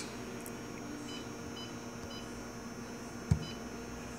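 Key-press beeps from an APLIC 5000 press brake touchscreen control as a material thickness is typed on its on-screen number pad. There are four short, high beeps: three about half a second apart, then a fourth about a second later that comes with a low thump. A faint steady hum runs underneath.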